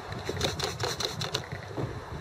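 Hand trigger spray bottle squeezed several times in quick succession, each squeeze a short click and spritz. It is spraying a bubble leak-test solution onto a propane pigtail hose fitting.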